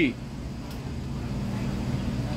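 Steady low hum of background vehicle noise, like a running engine or traffic, with the tail of a man's voice at the very start.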